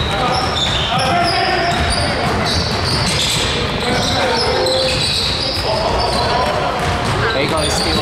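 Basketball game on a hardwood gym floor: the ball bouncing as it is dribbled, sneakers squeaking in many short high chirps, and players' voices calling out, all echoing in the hall.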